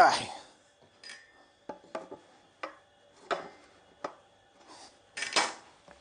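Pine boards being handled on a wooden workbench: a series of light wooden knocks and taps, then a louder, longer scraping knock about five seconds in as the boards are brought together.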